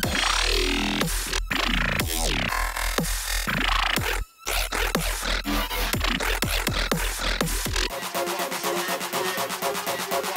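A dubstep preset pattern playing from the Korg Electribe Wave iPad app, with deep bass and falling pitch sweeps, cutting out briefly about four seconds in. Near the end the deep bass drops away and a trap build-up pattern of fast, evenly repeated hits takes over.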